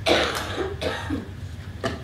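A cough: a harsh burst right at the start, fading quickly, followed by weaker throat sounds and a brief sharp sound near the end.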